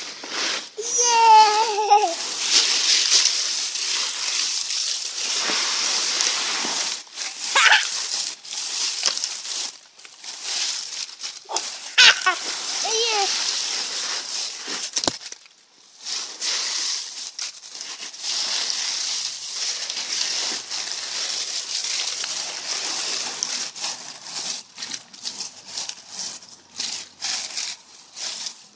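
Dry fallen leaves rustling and crunching steadily as a small child moves about in a leaf pile, with a few short high child's squeals and vocal sounds, the first about a second in.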